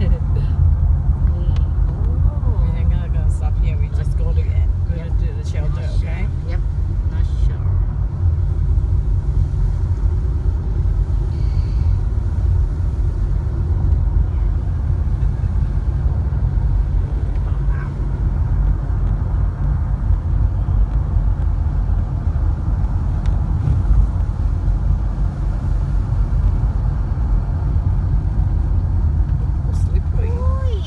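Car driving slowly with a window open: a steady, loud low rumble of wind buffeting the microphone over the car's tyre and road noise.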